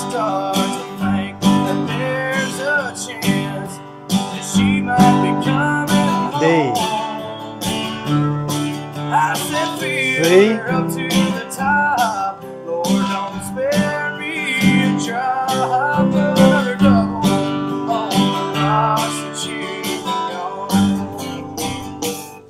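Acoustic guitar strummed in a steady rhythm through the chord changes of a country chorus starting on F, moving to C and G. A man's voice sings along in places over the strumming.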